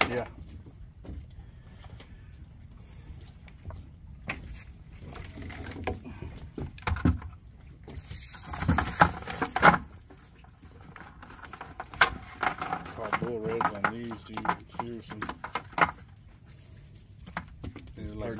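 Plastic bag rustling and crinkling as it is handled, loudest about halfway through, with indistinct voices in the background.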